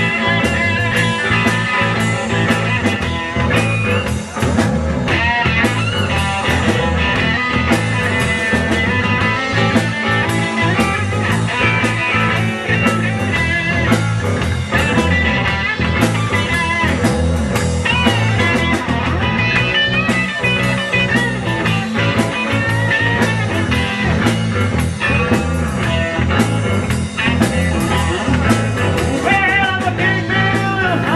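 Live blues-rock band playing: electric guitar with bending lead lines over a drum kit's steady beat.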